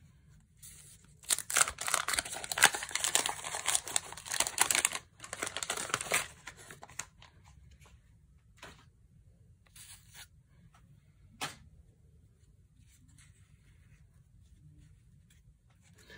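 Wax paper wrapper of a 1987 Topps baseball card pack being torn open and peeled off the cards, crackling and tearing for about five seconds. A few faint, separate clicks follow.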